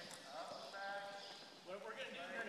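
Hoofbeats of a horse walking on soft arena dirt, with a person's voice over them.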